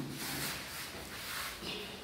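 Faint rustling and scuffing of two wrestlers grappling on foam floor mats, one straining to break out of a hold.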